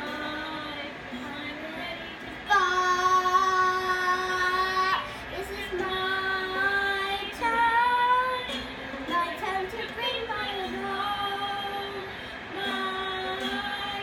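A young girl singing a song in long held notes, the loudest a note held for over two seconds about two and a half seconds in, followed by several shorter sung phrases.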